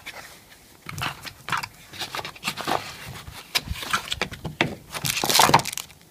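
Hands rummaging in a cardboard box and crinkling plastic packaging bags: an irregular run of rustles and scrapes, loudest about five seconds in.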